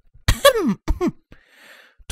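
A person's short voiced laugh in two bursts, each falling in pitch, then a faint breath.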